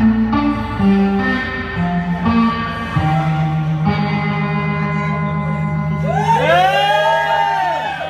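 Live garage-rock band music led by an electric guitar. A run of held single notes steps down in pitch, then a low note is held with a steady pulsing. In the last two seconds, swooping notes rise and fall in pitch as the song ends.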